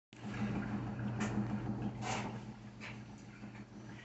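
A steady low hum with a few faint, short soft sounds, one about a second in, one about two seconds in and one a little later.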